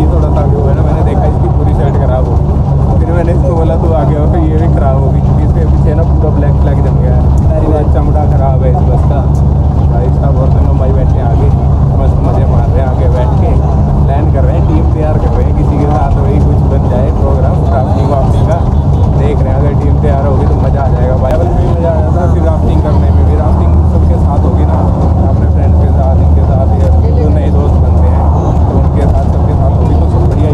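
Steady low rumble of a moving bus's engine and road noise heard inside the passenger cabin, with voices talking over it throughout.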